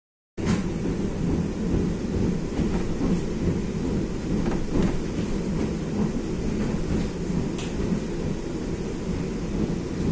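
Steady low rumble of a moving electric commuter train heard from on board, wheels on rails, with a few faint clicks scattered through it.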